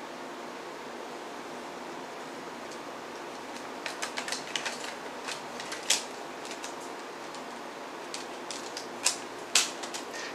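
Plastic double-CD jewel case, its clip already broken, clicking and clattering in the hands over a steady low room hum. The clicks start about four seconds in as irregular runs, with a few louder snaps near the end.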